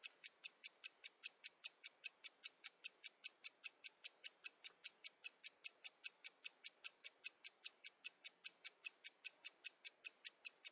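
Countdown timer sound effect ticking steadily, with sharp, high-pitched clock-like ticks about four times a second while the timer runs down.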